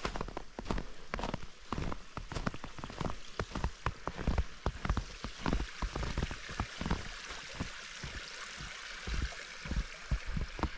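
Footsteps crunching through fresh snow, a quick irregular patter of steps, over the running water of a small creek that grows louder in the second half.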